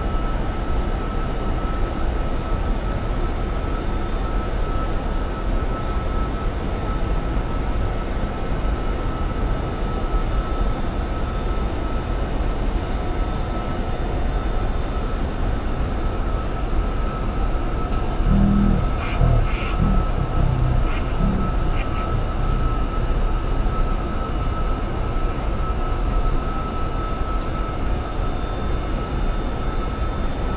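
Steady in-flight cockpit noise of a private jet at cruise: a constant rush with a thin, steady high whine. About eighteen to twenty-two seconds in, a brief muffled voice and a few small clicks break through.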